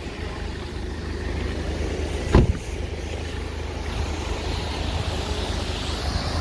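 Steady low rumble of street traffic and running engines, with one sharp thump about two seconds in.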